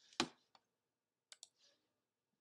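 Clicks at a computer: one louder click shortly after the start, a faint one, then a quick pair of sharp clicks past the middle.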